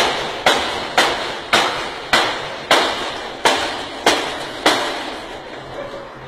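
A series of sharp, identical hits repeating evenly about every 0.6 seconds, each ringing out before the next.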